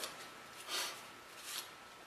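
Quiet, with two faint, brief soft rustles as gloved hands handle and move the outboard water pump's metal bottom plate away from the lower unit.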